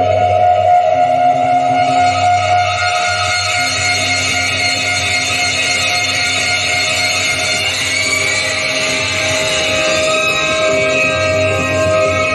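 A 1970s Barcelona progressive rock record playing on a turntable through loudspeakers, with long held chords and guitar.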